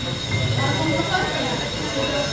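Students' indistinct chatter and murmuring, with a thin steady high-pitched whine running underneath.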